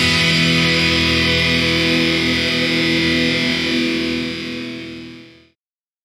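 A distorted electric guitar chord is left ringing as the final chord of a melodic black metal song. It holds steady, fades over its last second and a half, and cuts off to silence about five and a half seconds in.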